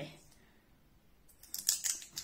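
A quick cluster of small sharp plastic clicks and crackles about a second and a half in, from fingers working the lid and sifter of a jar of Laura Mercier loose setting powder as it is opened.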